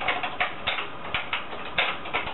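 BBC Micro keyboard being typed on: a quick, uneven run of about nine key clicks as a command is entered.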